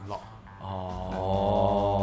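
A man's voice holding one long syllable at a low, steady pitch, like a drawn-out hum while he searches for words. It starts about half a second in after a brief quiet.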